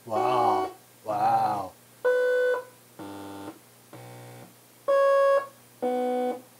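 Synthesizer notes run through a Zlob Modular Foldiplier wave folder, about one note a second at changing pitches. The timbre shifts from note to note as the folding is adjusted: the first two notes have sweeping, vowel-like overtones, and the later ones are steadier and buzzier.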